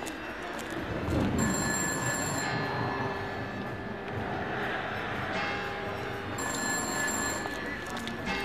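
Quiet breakdown in an electronic dance track, with a ringing, telephone-bell-like tone that sounds for about a second, twice, about five seconds apart.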